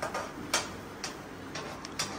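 A few light, sharp clicks and taps of steel kitchen utensils and dishes, roughly half a second apart, over low kitchen background noise.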